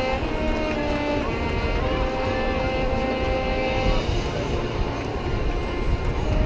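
Marching band playing slow, sustained chords, the held notes shifting pitch every second or so, over crowd murmur and a low outdoor rumble.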